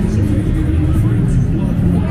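Crowd of people talking on a busy street, voices mixed over a loud, steady low rumble.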